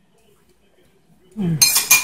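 A metal spoon clinks and scrapes against a saucepan as it goes back into the sauce, in the last half second.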